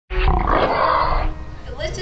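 A person's voice: a loud, roaring yell about a second long that cuts off, followed by quieter voice sounds.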